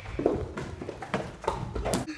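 A handful of irregular knocks and thumps on a hard surface, about five in two seconds, the loudest just before the end.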